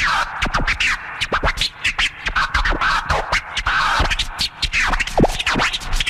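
Turntable scratching over a hip hop beat: a record worked back and forth under the needle in quick cuts, each sliding up and down in pitch.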